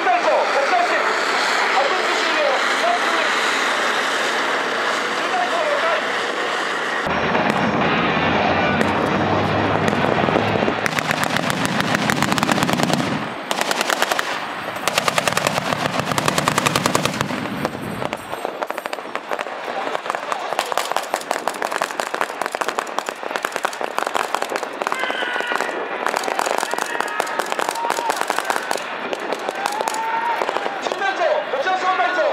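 Machine gun firing long rapid bursts of blanks, two bursts with a short break between them about halfway through. Under the bursts is the deep running of an armoured vehicle's engine, which starts shortly before the firing and stops soon after it.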